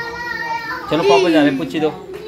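Wordless cooing and baby-talk voices around an infant: a held high note for about a second, then sing-song sounds gliding up and down.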